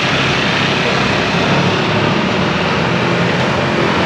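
Street traffic: motorbike and car engines running along a busy road, a steady wash of noise with a low engine hum underneath.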